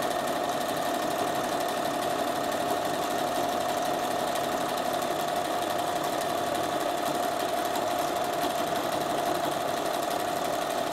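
Bernina sewing machine running steadily at constant speed, sewing a wide, close-set satin stitch along the edge of a fabric notebook cover.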